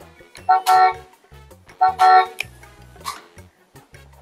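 Electronic toy steering wheel sounding two short, steady honks from its horn button about a second and a half apart, over its own low electronic background tune.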